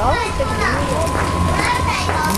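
Children's voices chattering and calling out, with a steady low hum underneath.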